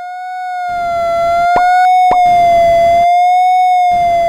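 Desmos graphing calculator's Audio Trace playing the graph of y = cos(x) as sound: a steady electronic tone whose pitch gently rises and falls with the curve's height. Static hiss comes and goes in stretches, marking where the graph is below the x-axis. Two short pops, about a second and a half and two seconds in, mark points of intersection.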